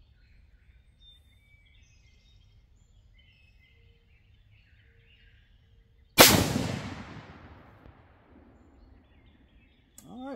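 A single rifle shot from a Savage Axis II heavy-barrel bolt-action in 6mm ARC, about six seconds in: one very loud report that echoes and dies away over a couple of seconds. Faint birdsong before it.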